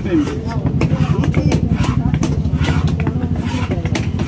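Cleaver chopping through fish on a wooden block, with sharp chops coming every half second or so. Under the chops an engine runs steadily, along with voices.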